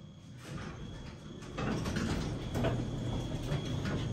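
Elevator doors and their door mechanism working as the doors slide open. The sound grows louder about one and a half seconds in and settles into a steady low mechanical hum.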